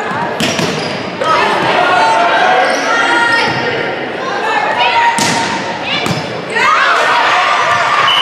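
A volleyball rally in a gym: sharp slaps of the ball being struck, once near the start and twice more around five and six seconds in, amid players and onlookers shouting and calling out. The hall gives the sounds a reverberant ring.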